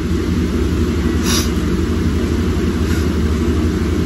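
A steady low mechanical hum, like a running appliance or motor, with a short faint hiss about a second in.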